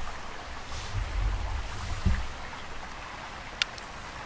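Wind buffeting the microphone outdoors, a low uneven rumble over a steady hiss, with one small sharp click near the end.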